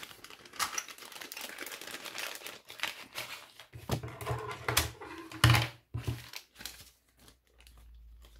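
Small smoked plastic pouch crinkling and rustling as it is handled and opened, in irregular crackles with a sharper crackle about five and a half seconds in.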